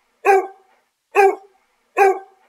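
Stock sound-effect recording of a dog barking: short single barks about a second apart, two in full and a third starting at the very end.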